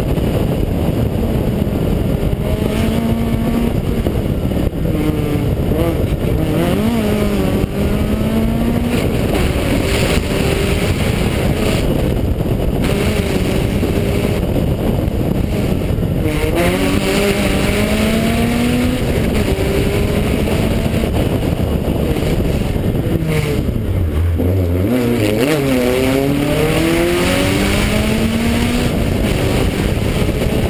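Citroën Saxo VTS 16V rally car's 1.6-litre 16-valve four-cylinder engine driven hard on a stage, the pitch climbing through each gear and dropping at each shift. About three-quarters through it falls away on a lift and a run of quick downshifts, then pulls hard again; heard from the roof with steady road and wind noise.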